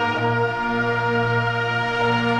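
An orchestra holding sustained chords in an instrumental passage, the chord changing just as it begins.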